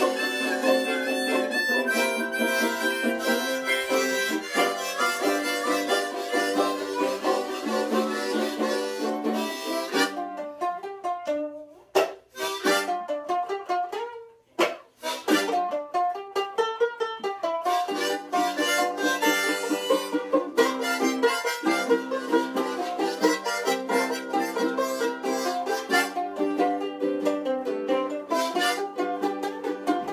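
Two harmonicas playing a blues tune over a strummed ukulele and banjolele. Around the middle the playing thins out to a single sliding note and twice drops almost to silence, then the full group comes back in about sixteen seconds in.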